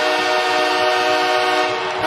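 Hockey arena goal horn sounding a loud, steady chord of several tones, signalling a home-team goal.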